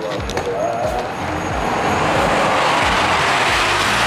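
Steady rushing noise of a road vehicle going past, swelling about a second in and then holding at full loudness.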